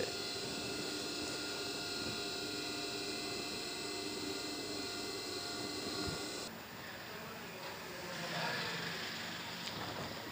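Steady electric hum with several fixed tones from an industrial sewing machine's motor running while no stitching is done. It cuts off about six and a half seconds in, leaving faint rustling of cloth being handled.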